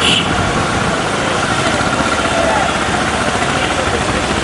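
A motorcycle engine running at low speed close by, over the steady noise of a crowd of marchers' voices.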